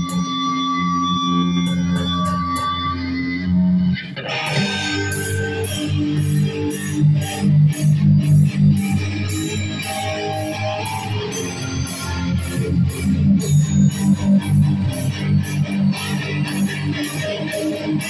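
Loud live electric guitar through an amplifier, holding sustained notes at first; about four seconds in a steady drum beat with cymbals comes in and the band plays on at full volume.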